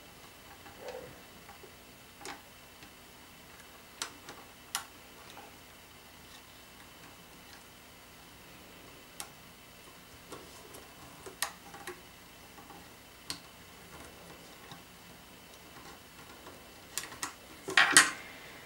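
Light, irregular clicks and ticks of rubber bands and fingers working on the plastic pegs of a Rainbow Loom, about a dozen spread out with a small cluster near the end.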